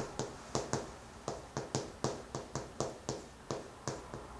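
White chalk tapping and scraping on a chalkboard as handwriting is written, a quick run of short, sharp taps at about four a second.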